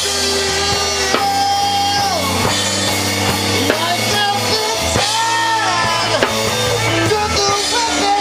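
Live rock band playing: drum kit and electric guitar over a steady bass line, with a lead line of held notes that bend and slide down in pitch.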